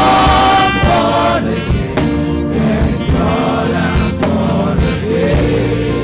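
Gospel choir singing over instrumental accompaniment with a steady beat.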